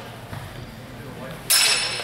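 Steel longsword blades clashing about one and a half seconds in, a sudden hit followed by a metallic ring.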